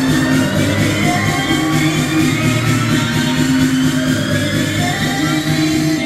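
Loud electronic music with a steady beat, sustained bass notes and a synth melody.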